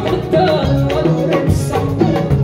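Live Amazigh wedding-band music: a bowed ribab's held notes over electric bass and guitar, a drum kit, and hand-beaten frame drums keeping a steady rhythm.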